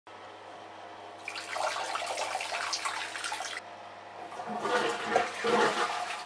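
A toilet flushing: a rush of water a little over a second in, then a second gurgling surge of water that stops abruptly near the end.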